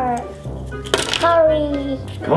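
Background music with a long, falling 'ooh' from a voice, and a sharp plastic click about a second in as a Kinder egg capsule snaps open.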